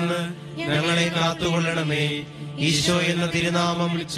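A man's voice chanting a Malayalam prayer in a recitation tone, over a low musical drone held steady beneath it.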